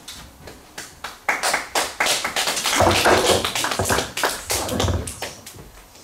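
A congregation claps in applause. It starts about a second in, swells, then dies away near the end.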